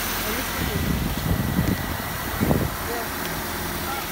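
Car engine running at idle, just brought back to life by a jump start from a portable jump pack after the battery went flat. Faint voices over it.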